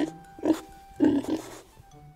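Two short grunting noises, one about half a second in and a longer one about a second in, over background music.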